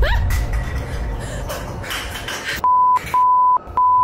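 Three loud bleeps of one steady tone in the second half, the last two longer than the first: a censor bleep of the kind laid over swearing. Before them come rustling, knocks and rumble from a handheld phone recording.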